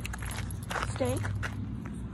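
Footsteps on a gravel path, a run of short scuffs and clicks over a low rumble from the handheld phone, with a woman saying "stay" about a second in.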